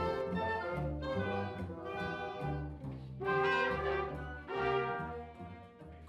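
Orchestra playing a slow passage of sustained chords, the phrases swelling and falling back about once a second, fading near the end.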